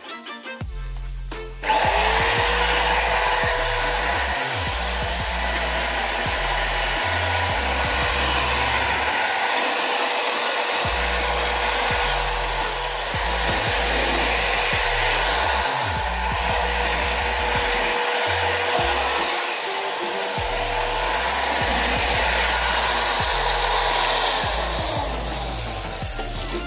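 Handheld angle grinder switched on about two seconds in, spinning up to a steady whine and running against sheet metal as it strips paint from the tractor's front panel, then winding down just before the end. Background music with a bass line plays under it.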